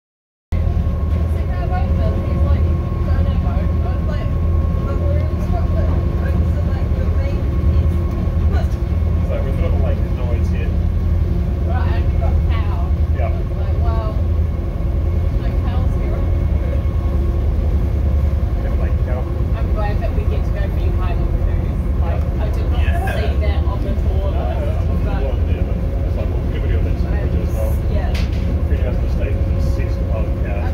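A boat's engine running steadily with a deep drone and a faint whine above it, cutting in about half a second in, with voices chattering indistinctly over it.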